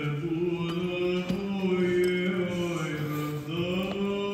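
Orthodox church chanting: long sung notes held and stepping slowly up and down in pitch.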